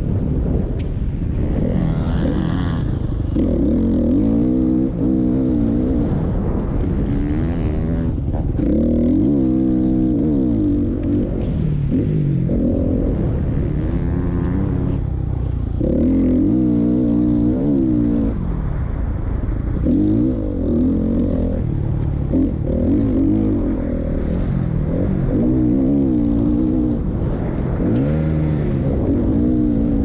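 Motocross bike engine heard from onboard, revving up and backing off over and over as the rider accelerates down the straights and shuts off for the corners.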